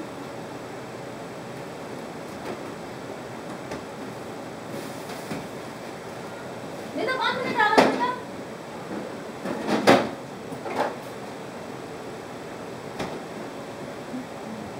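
Kitchen background with a steady hiss, a brief voice about seven seconds in, then a few sharp knocks about ten seconds in and one more near the end.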